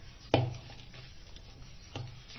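A metal fork knocking against a stainless steel bowl while stirring thick cake batter: one sharp clink with a short ring about a third of a second in, and a lighter one near the end, over a steady low hum.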